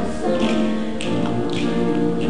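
A choir singing a pop arrangement in harmony with piano accompaniment, over a steady beat of short percussive hits about twice a second.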